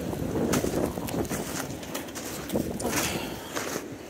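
Irregular footsteps in wet snow and slush, over a steady rush of storm wind on the microphone.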